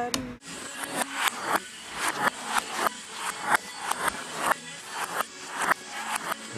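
Rhythmic scraping strokes, about two to three a second, each a short rasping swish.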